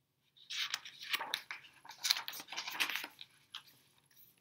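Paper pages of a hardcover picture book being turned, a run of crackly rustling and scraping that lasts about three seconds.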